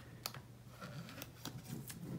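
A blade tip slitting the plastic shrink-wrap on a CD album case, with a few faint sharp ticks and crinkles of the film.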